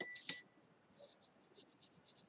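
Two quick clinks of a paintbrush against a glass water cup, the second louder, each with a brief ring; faint soft ticks of the brush follow.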